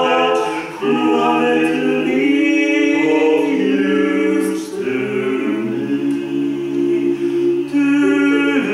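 Male vocal quartet singing a cappella in close harmony, holding chords that shift every second or so, with brief breaks about a second in and again near the middle.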